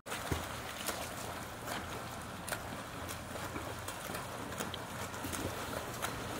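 Steady rain falling outdoors: an even hiss with scattered sharp ticks of drops striking nearby surfaces.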